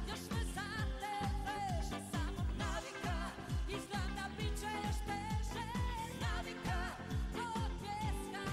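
A female pop singer sings live with a band, her held notes wavering with vibrato over a steady, evenly spaced kick-drum beat.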